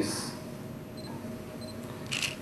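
Quiet room tone with a faint steady hum. Two faint, very short high beeps come about a second in and again about half a second later.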